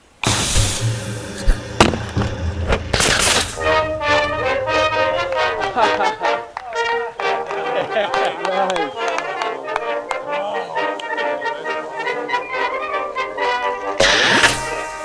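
A model rocket motor igniting with a sudden loud rushing hiss for about three seconds, ending in a sharper burst. Then brass-led music takes over.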